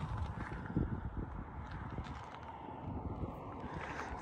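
Wind rumbling on the microphone at an open mountain overlook, with a few faint knocks.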